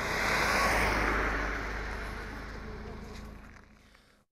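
A Lada Niva driving past on a packed-snow road: engine and tyre noise that swells to its loudest about a second in, then fades steadily away.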